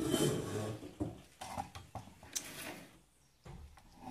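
Domestic sewing machine stitching bias binding onto cotton fabric in short, irregular runs, loudest in the first second, with separate mechanical knocks after.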